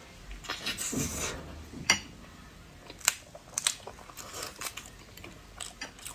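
Close-miked chewing of a mouthful of soft boiled egg, with wet mouth clicks and smacks; a few sharp clicks stand out about two and three seconds in.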